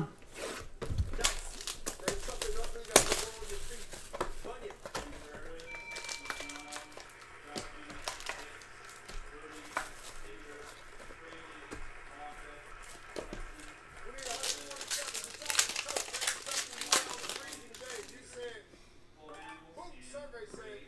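Clear plastic wrap being torn and crumpled off a trading-card box: a run of crackles and crinkles, thickest about three quarters of the way through.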